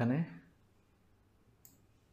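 A word of speech trailing off, then a single short click of a computer mouse button a little past the middle, over faint room tone.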